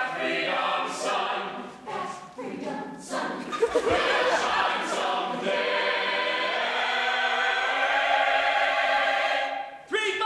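A stage chorus singing together in a musical theatre number, with a long held chord from about halfway through that cuts off just before the end.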